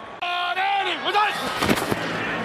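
A man's raised voice, then a short burst of noise across the whole range near the end.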